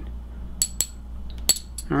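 Small metal coins clinking against each other as one is flicked onto another: sharp, bright metallic clicks with a brief ring, a pair about half a second in and a few more near the end.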